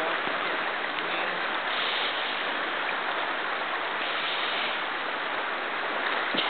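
A shallow, rippling creek rushing steadily.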